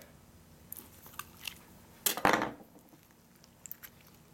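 Carving and digging into a homemade Knox gelatin ballistics block to get the bullet out: scattered small clicks and squishy crunches, with one louder rasp about two seconds in.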